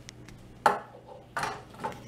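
Three sharp clatters of hard objects knocking, the first and loudest a little over half a second in, then two more about half a second apart.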